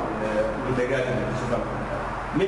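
A man speaking, lecturing.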